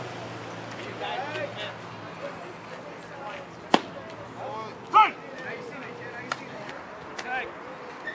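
Players' voices calling out around a baseball field in short, scattered shouts, the loudest about five seconds in. A single sharp smack comes just before that shout.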